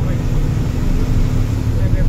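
Truck's diesel engine running with a steady low hum, heard from inside the cab as the truck drives along.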